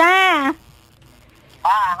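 A woman's voice drawing out two sing-song syllables, a longer one at the start and a shorter one near the end, each rising and falling in pitch so that it sounds almost like a cat's meow.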